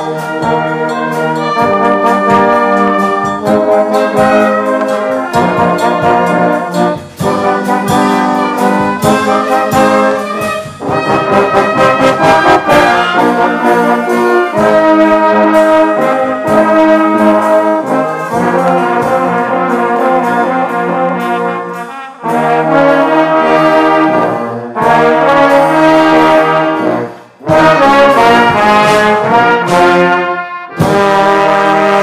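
Church brass band of trumpets, trombones and tubas, with clarinets, playing a piece in full sustained chords. The phrases are broken by brief pauses every few seconds.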